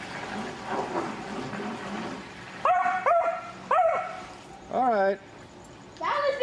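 A large dog barking: three short barks in quick succession about halfway through, then one longer, wavering call near the end.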